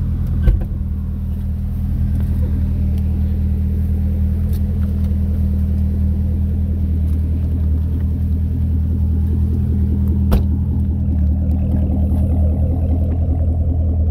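2009 Chevrolet Corvette's 6.2-litre LS3 V8 idling steadily, with a thump just after the start and a sharp knock about ten seconds in.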